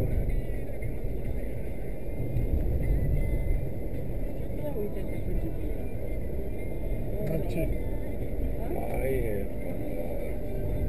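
Steady low road and engine rumble of a car driving, heard from inside the cabin, with a brief voice near the end.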